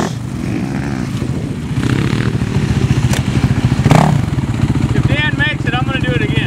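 Sport quad (ATV) engine running at low revs with an even, pulsing chug, briefly louder about four seconds in. Shouting voices near the end.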